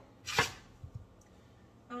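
A single knife chop through a raw peeled sweet potato onto the counter, sharp and sudden, about half a second in, followed by a couple of faint knocks.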